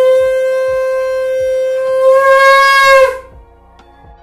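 Conch shell (shankh) blown in one long, steady, loud note as part of a household puja. It grows brighter and louder towards the end, then cuts off about three seconds in with a slight dip in pitch.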